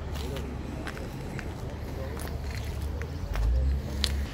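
Voices of people talking in the street, with no one close to the microphone. Under them runs a steady low rumble that swells briefly near the end, and there are a few light clicks.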